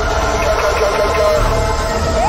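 Background music with held, sustained tones over a low rumble.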